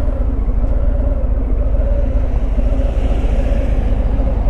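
Harley-Davidson Fat Bob's Milwaukee-Eight 107 V-twin idling steadily at a stop, a low rumble, with road traffic passing in front.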